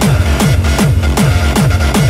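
Hardstyle dance track playing: a heavy distorted kick drum with a falling pitch hits on every beat, about two and a half beats a second, with synths and hi-hats over it.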